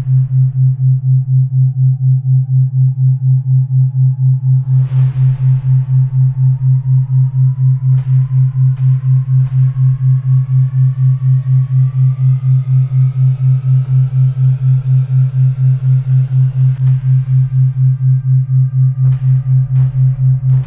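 Synthesized healing-frequency track: a loud low hum pulsing about four times a second, under a faint tone that climbs slowly in pitch. A whoosh sweeps through about five seconds in, and a few faint ticks fall near the end.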